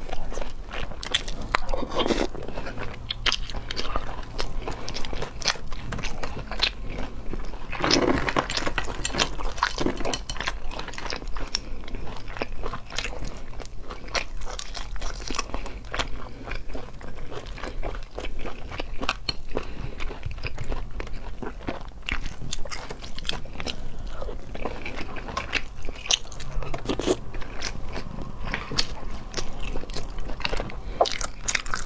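Close-miked eating of cat's eye sea snails: many small irregular clicks and crunches from the shells being handled and the meat being bitten and chewed, with a few louder wet mouth sounds now and then.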